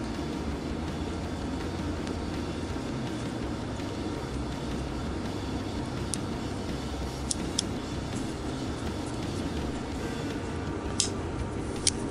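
Folding pocketknife being handled, giving a few short sharp clicks from its blade and lock mechanism, three around the middle and two near the end, over a steady low background rumble.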